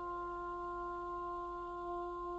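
Orchestral film-theme music: a single note held steadily and softly, with no other instruments moving.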